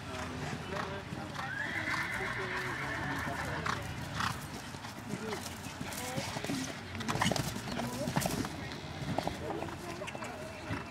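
Show-jumping horse cantering on turf, its hoofbeats sounding as it goes round the course. A horse whinnies for a couple of seconds starting about a second in, and a cluster of sharp knocks comes a little after seven seconds in.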